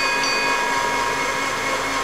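Electric blender motor running steadily at full speed, a rushing noise with a high whine.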